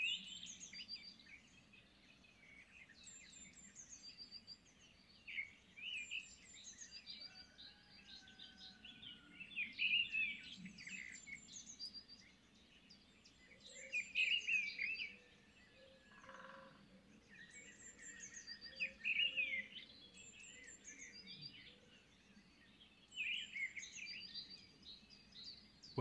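Several small songbirds chirping and singing, their short high phrases overlapping and coming in clusters every few seconds, over a faint, steady background.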